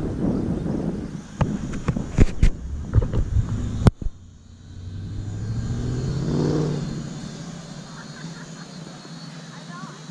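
Several sharp knocks in the first four seconds over busy outdoor noise, then a motor vehicle passing with its engine rising in pitch about six seconds in, fading to a steady background.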